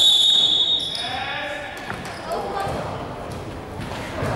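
A referee's whistle blast that fades out during the first second or so, followed by players' voices and a basketball bouncing on the court.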